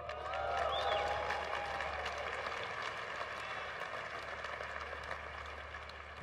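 Audience applauding and cheering, with a few whoops near the start; the applause swells about a second in and then slowly dies away.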